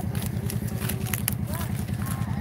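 Side-by-side UTV engine idling with a steady low pulse, with a few sharp clicks about a second in.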